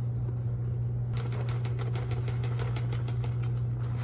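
A steady low hum, with a plastic food bag crinkling and crackling as it is handled from about a second in.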